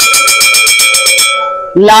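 A white bone china soup bowl struck rapidly with a white spoon, about eight taps a second for over a second. The bowl rings with several clear, steady tones that fade out shortly after the tapping stops. The ring is offered as the bowl's own sound, the mark of light bone china.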